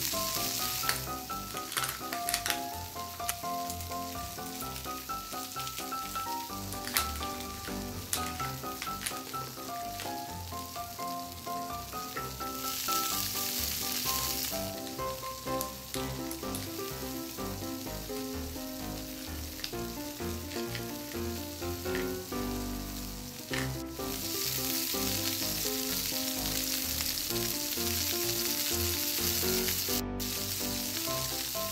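A sizzling, frying sound effect over light background music. The sizzle comes in for about two seconds midway and again for the last six seconds, and a few sharp clicks of small plastic pieces being handled sound in the first half.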